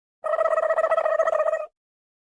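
A cartoon sound effect: a steady buzzing tone with a fast flutter, starting a moment in and cutting off after about a second and a half.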